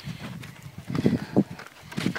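Footsteps on a rocky, gritty trail: a few irregular steps and scuffs about halfway through.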